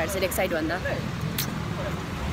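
Steady low rumble of street traffic, with a woman's voice speaking over it during the first second and a brief click about a second and a half in.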